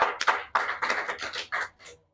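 A small group of people clapping in quick, uneven claps that thin out and fade towards the end.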